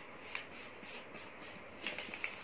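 Faint rubbing and rustling of paper under a hand as a glued seam of a folded paper bag is pressed down, with a couple of soft crinkles.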